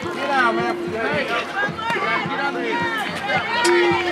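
Several spectators' voices chattering at once, overlapping so that no words stand out, with a steady hum-like tone that comes and goes.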